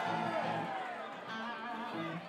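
Live rock band music led by electric guitar, with sustained notes that bend slightly.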